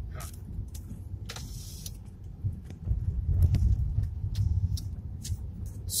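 Road noise inside a Suzuki Swift hatchback's cabin while driving: a low rumble of engine and tyres, with scattered light clicks and rattles. The rumble grows louder from about two and a half seconds in.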